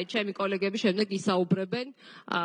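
Speech only: a woman talking continuously into a desk microphone.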